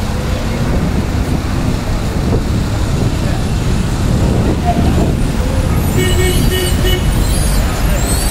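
Road traffic with a steady low rumble of passing cars, and a car horn sounding in a run of short toots near the end.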